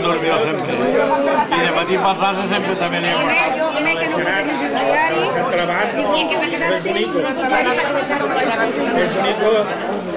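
Many people talking at once around dining tables: a steady hubbub of overlapping conversation in which no single voice can be made out.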